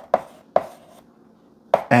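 Chalk writing on a blackboard: a few sharp taps of the chalk against the board, with faint scratching between strokes. A man's voice starts near the end.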